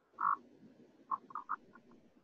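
A faint voice breaking up over a poor video-call connection into short garbled fragments: one clipped burst just after the start, then a quick run of four or five choppy bits about a second in.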